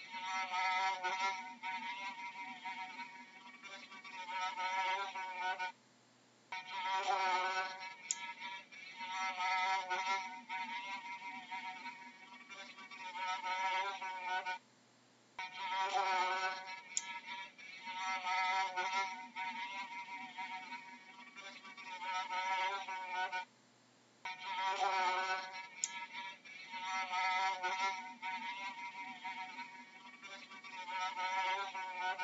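Fly buzzing in flight, a wavering hum that cuts out briefly three times as the recording loops.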